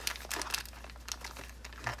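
Small clear plastic bag crinkling in the hand as it is picked out of a plastic parts drawer, a run of light crackles and rustles.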